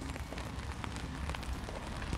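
Steady outdoor rain: a soft, even hiss of rain falling on wet paving, with faint scattered drop ticks.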